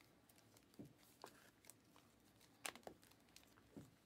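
Faint, sparse clicks and rustles of 2020-21 Panini Optic basketball cards being handled and flipped through by hand, a handful of brief ticks with the loudest pair a little past halfway.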